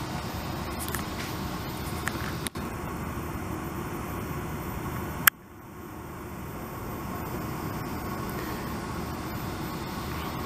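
Steady hum of distant road traffic, with a short click about five seconds in, after which the background is briefly quieter.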